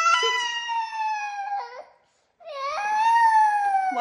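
A toddler wailing in two long, drawn-out cries: the first breaks off about two seconds in, and the second starts a moment later.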